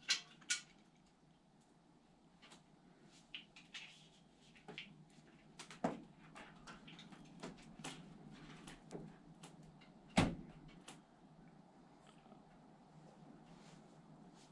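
Faint clicks, taps and rustling of a spray-foam gun and its small plastic nozzle tips being handled and unpacked, with one louder knock about ten seconds in.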